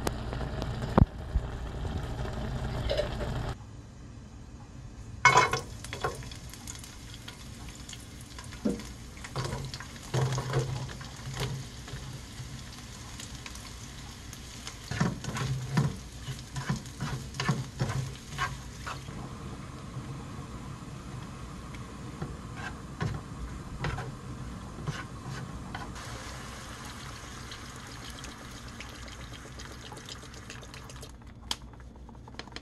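Home stovetop cooking: a pot of spicy ramen with bean sprouts bubbling for the first few seconds, then, after an abrupt cut, chopsticks knocking and scraping in a frying pan while sliced leeks and garlic fry in oil with a light, steady sizzle.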